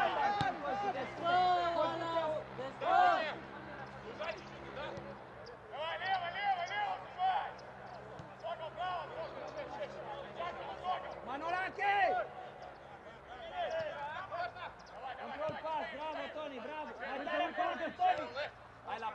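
Players and coaches on a football pitch calling out to each other, in short shouts throughout, with a sharp knock about half a second in.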